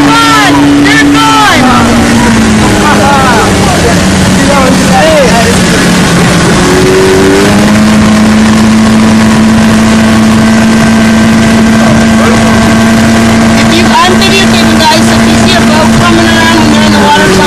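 Outboard motor of a motorboat running at speed while towing a tube, its pitch dropping about two seconds in and rising again near the middle, over the rush of the wake. Shouts and whoops come and go over the engine.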